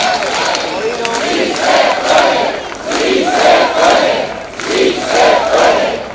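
Large rally crowd chanting a slogan in unison, many voices shouting the same phrase over and over, about once every one and a half to two seconds.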